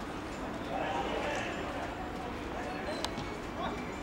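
Footballers' distant shouts and calls across an open pitch over steady outdoor background noise, with one sharp knock about three seconds in.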